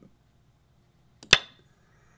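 A single sharp click about a second and a quarter in, with a brief ringing tail, from stepping through moves on a computer Go board.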